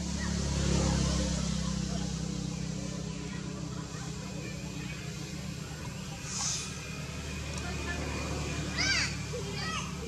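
A steady low hum with faint voices over it, and a quick run of high chirping calls near the end.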